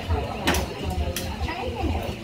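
Indistinct voices over party music with a steady thumping bass beat. Two sharp clicks come about half a second and a second in.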